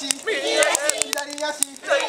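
Young children singing together in chorus, held notes stepping from pitch to pitch, with sharp clicks scattered through.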